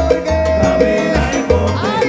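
Salsa music played live by a band: steady bass and percussion, with a long held note over them for about the first second.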